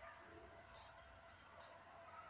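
Two faint, short computer mouse clicks a little under a second apart, over near-silent room tone.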